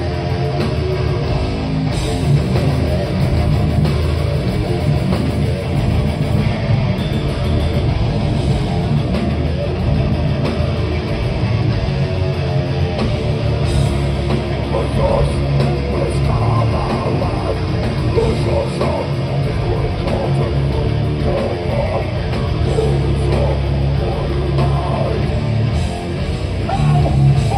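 Death metal band playing live, heard from the crowd: heavily distorted electric guitars, bass and drums, loud and dense with no break.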